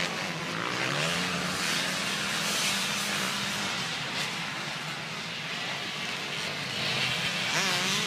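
Engines of a pack of off-road racing motorcycles revving and easing off as they ride across the hillside, a continuous drone rising and falling in pitch.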